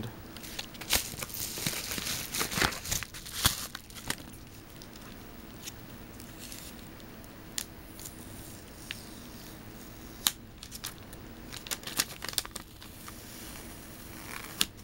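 Padded paper mailer being torn open and its contents crinkled: a run of sharp tearing and crackling in the first few seconds, scattered small crinkles and clicks after that, and another busy stretch of crinkling about ten to thirteen seconds in.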